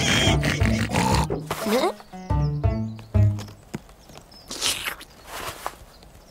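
Cartoon pigs' laughing and snorting for the first two seconds, followed by a short comic music phrase of low, stepping notes, and a few soft noisy rustles near the end.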